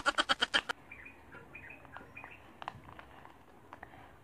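A boy's rapid, evenly pulsed giggle that stops under a second in, followed by faint high chirps and small clicks.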